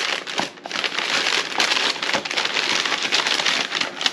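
Brown kraft packing paper crinkling and rustling as it is handled and pulled out of a shipping package by hand.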